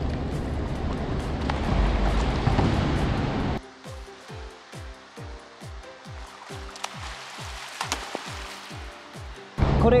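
Pool water splashing as a water polo player winds up and shoots, with background music. About three and a half seconds in it cuts to music alone: a steady beat of deep kick drums that each drop in pitch, about two a second.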